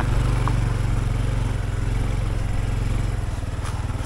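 Motorcycle engine running steadily as the bike is ridden along a rocky dirt trail, getting slightly quieter toward the end.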